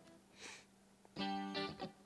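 A short funk rhythm-guitar chord from Reason's A-List guitar instrument, sounding once about a second in and stopping under a second later.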